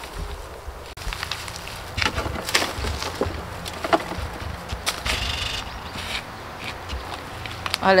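Garden fork working through a compost heap: scattered soft scrapes and rustles over a steady low background rumble.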